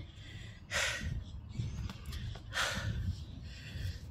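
Two short, heavy breaths close to a phone microphone, about a second and a half apart, over a low wind rumble on the microphone.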